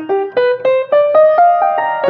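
Solo piano improvisation: a line of single notes climbing step by step, about eight notes in two seconds.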